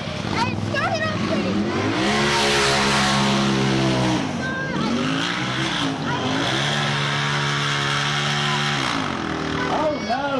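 Rock bouncer's engine revved up hard and held at high revs, falling away about four seconds in, then revved up and held again before dropping off near the end, as the buggy claws up a steep dirt hill.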